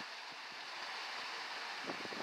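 Steady rush of a mountain stream pouring from a small waterfall down a granite rock chute.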